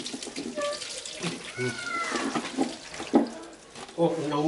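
Water running from an outdoor tap and splashing over hands and roots being rinsed under it, with short bits of voice over it.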